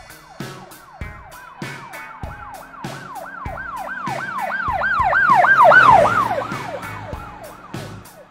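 Emergency-vehicle siren in its fast yelp, about three up-and-down sweeps a second, growing louder to a peak about six seconds in and then fading as if passing by. Under it runs music with a steady beat.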